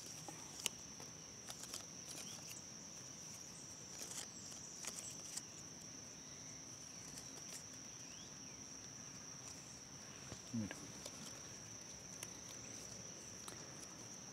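A cricket's steady high-pitched chirring, faint throughout, with scattered soft clicks and rustles from bonsai wire being wound onto the tree's branches.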